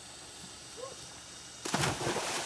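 A body splashing into an above-ground swimming pool: one sudden loud splash about one and a half seconds in, followed by the churning of disturbed water.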